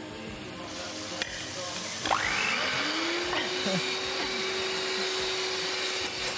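Electric mixer whirring up to speed about two seconds in, then running steadily as it whips egg whites.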